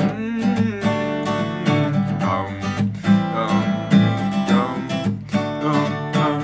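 Acoustic guitar strummed in a steady rhythm, playing the instrumental intro of a song.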